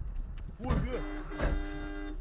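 Dashcam recording's own muffled sound inside the car: a person's voice about half a second in, then a steady held tone for about a second near the end.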